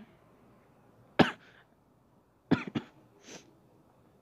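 A man coughing: one sharp cough about a second in, then two coughs close together a little past halfway.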